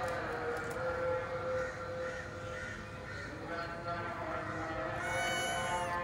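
Kittens in a cage, one giving a single loud, high meow about a second long near the end.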